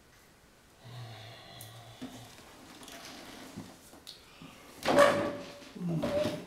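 A wooden dining chair dragged across the floor as it is pulled out and sat in: a short loud scrape with a squeal about five seconds in, and a second, briefer scrape right at the end. Softer shuffling and handling sounds come before it.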